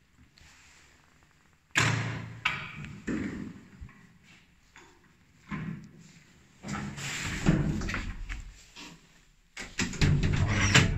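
A lift's hinged landing door being opened and handled: a sudden metallic clunk about two seconds in, then a run of knocks and thuds as the doors move, the loudest one about three quarters of the way through.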